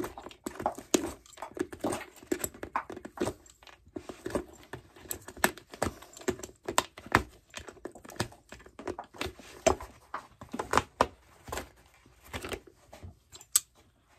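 Cobbler's pincers gripping and pulling heel nails from a leather boot's heel base: a run of irregular sharp metallic clicks and snaps.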